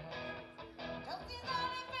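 Live band music: electric guitar strumming in a steady rhythm, with a voice coming in about halfway through, gliding up into a held sung note.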